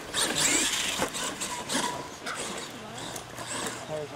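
A radio-controlled monster truck driving over a dirt track, its motor and drivetrain running with tyres crunching on the dirt, with voices in the background.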